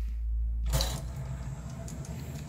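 Philips CD104 CD player's motorised disc tray driving out, its loading motor whirring through a newly fitted loading belt. The tray movement starts with a loud clatter about two-thirds of a second in, after a low rumble.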